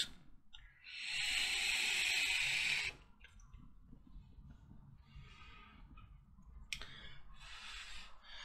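A draw on a sub-ohm vape: about two seconds of airy hiss as air is pulled through the Captain X3S tank while its 0.3-ohm coil fires. A click and a softer breathy exhale follow near the end.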